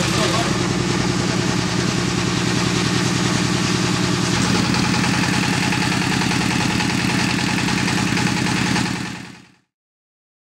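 An engine running steadily at an even pitch, fading out near the end.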